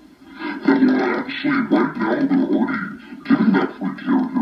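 A woman's voice talking almost without a pause, starting about half a second in.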